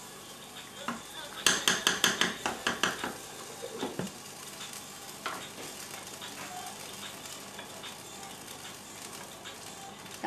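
A wooden spoon stirring a pot of lentil soup and clacking quickly against the pot, then a couple of single clinks as the glass lid goes on. A steady soft hiss of the soup simmering runs underneath.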